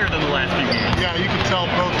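A man talking in a gymnasium, his voice over steady background noise from the hall.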